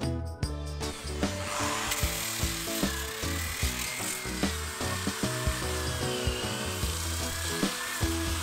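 Random orbital sander running on wooden boards, a steady whirring hiss with a faint whine that starts about a second in, over background music.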